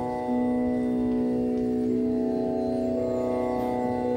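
Instrumental accompaniment of sustained organ-like keyboard chords, the notes held steady and shifting to new chords a few times.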